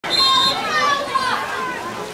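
Children's voices shouting and calling out. A loud, high-pitched call comes in the first half second.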